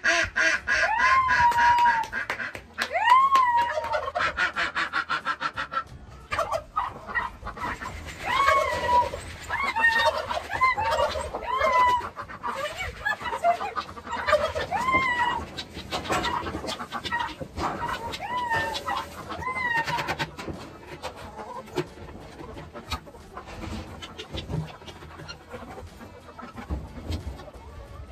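Farmyard animals calling over and over while being gathered for feed: many short calls that each rise and fall in pitch, crowded together for most of the time and thinning out near the end.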